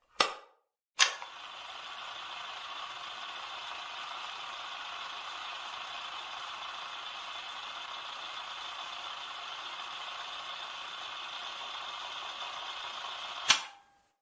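Sound effects under an animated logo: a sharp click, then another sharp hit that opens into a steady hiss. The hiss ends in a sharp hit near the end and cuts off suddenly.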